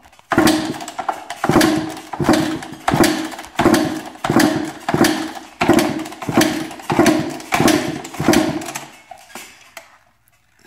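A 2004 Kawasaki KX250 two-stroke being kick-started about a dozen times in a steady rhythm, roughly one kick every 0.7 s, each kick turning the engine over without it firing. The throttle is held wide open and a compression gauge sits in the spark plug hole: this is cranking for a compression test. The kicks stop about a second before the end.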